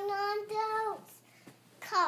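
A little girl singing unaccompanied, holding a steady note, then a second shorter one, then a quick falling swoop of the voice near the end.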